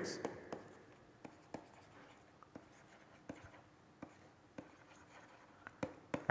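A pen writing by hand: faint, irregular taps and short scratchy strokes as words are written out.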